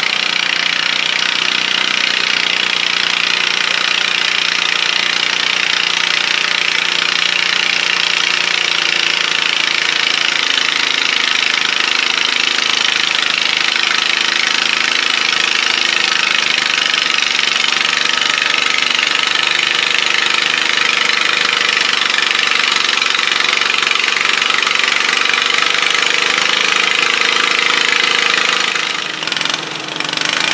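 Modified pulling garden tractor engine running hard under load as it pulls the sled down the track, loud and steady, then falling off about a second before the end as the throttle comes off.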